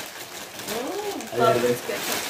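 A girl's voice making a rising-and-falling hum about a second in, then a short voiced sound, over the rustle of a plastic bag being handled.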